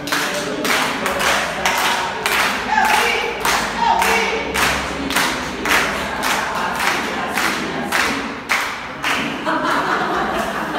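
A group of adults singing together while clapping a steady beat.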